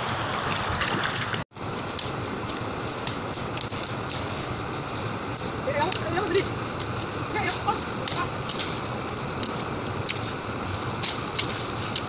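Shallow stream water splashing around a wading person for about a second and a half, then, after an abrupt cut, steady outdoor background noise with scattered sharp clicks and faint distant voices.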